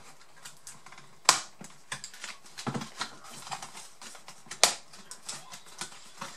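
Plastic parts of a Lenovo G570 laptop's casing clicking and knocking as they are handled and worked apart during disassembly. The clicks are irregular, with two sharper knocks, one about a second in and one near five seconds.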